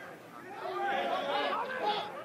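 Indistinct chatter of several voices in the background, starting softly and growing about half a second in.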